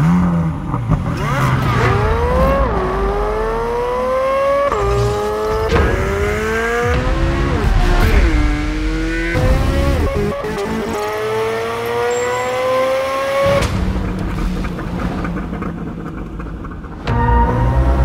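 Corvette C8 Z06's 5.5-litre flat-plane-crank V8 accelerating hard through the gears: the pitch climbs and drops back at each upshift, falls away once in the middle as it slows, then climbs in one long pull and cuts off about 13 seconds in. Music plays underneath.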